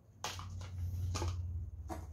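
Plastic spatula stirring thick cake batter in a glass bowl, with three brief scrapes against the bowl, over a steady low hum.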